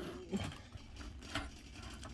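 Quiet handling of a leather handbag by hand, with a couple of soft clicks, about a third of a second and about one and a half seconds in.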